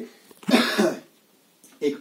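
A man coughs once, a short harsh burst about half a second in.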